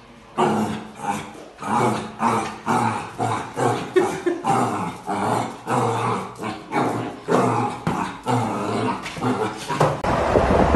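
Small black puppy barking over and over, about twice a second, at its own reflection in a mirror.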